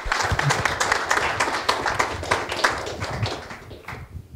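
Audience applauding, the clapping thinning out and stopping near the end.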